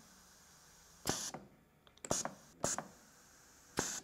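Compressed air hissing out of a pneumatic trainer's valves in four short bursts, with clicks, as the push-button input valves feeding an AND valve are pressed and released and the spring-return cylinder moves.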